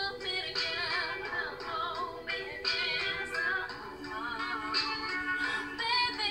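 A woman singing a cover song over backing music, her voice wavering and bending in pitch through short phrases while steady accompaniment notes sound underneath.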